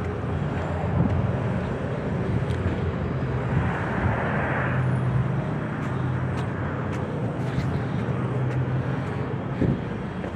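Steady outdoor background noise with a low hum running under it, and a brief swell of hiss about four seconds in.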